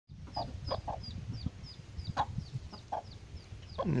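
A hen clucking softly among rapid high peeps from a duckling, each peep falling in pitch, about three a second. The hen appears to be mothering ducklings she has adopted.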